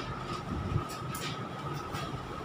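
Low room noise in a pause between speech: a steady low rumble with a faint, steady high-pitched hum.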